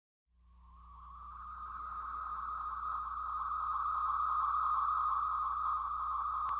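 A steady, high-pitched drone fades in from silence over a low hum and holds steady.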